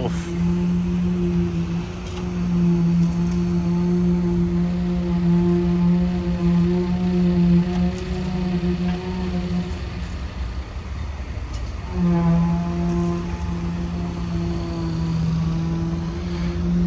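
Steady pitched hum of a concrete poker vibrator compacting freshly poured concrete in foundation formwork. It cuts out about ten seconds in and starts again sharply two seconds later.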